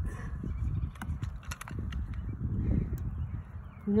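Metal plunger rod being worked inside a hay forage probe tube, giving scattered short knocks and scrapes as it forces out a tightly packed ground-hay sample, which the user suspects has snagged on a rock. A low rumble runs underneath.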